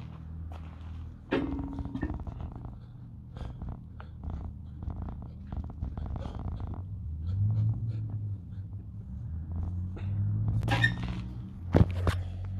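Footsteps crunching toward the camera with scattered small ticks, over a steady low hum, ending in a loud knock and rustle as the phone is picked up off the bar.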